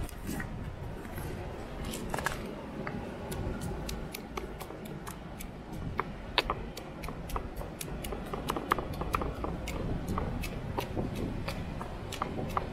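Granite pestle pounding and grinding seasoning and pimento berries in a granite mortar: irregular, closely spaced clicks and knocks of stone on stone, over a low steady rumble.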